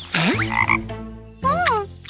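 Cartoon frog sound effect: two comic croaks, the first about a quarter second in and the second about a second and a half in, each bending up and down in pitch.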